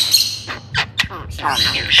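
Pet crested mynas calling: a harsh squawk right at the start, a few sharp clicks, then a chattering, voice-like call in the second half.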